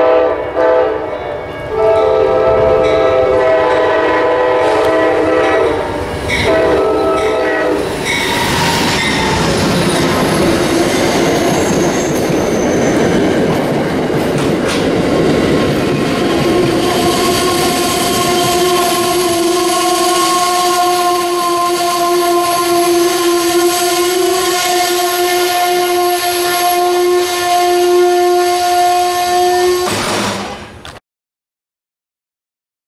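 Amtrak GE Genesis locomotive's K5LA five-chime horn sounding three blasts, the middle one the longest, as the passenger train approaches. The train then rolls past with the sound of its wheels on the rails, and from about halfway on a long steady squeal as it slows at the platform.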